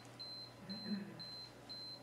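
Electronic beeping: a single high tone repeated in short beeps about twice a second.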